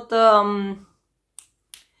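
A woman's voice trailing off on a drawn-out syllable mid-sentence, then a pause broken by two faint, short clicks about a third of a second apart.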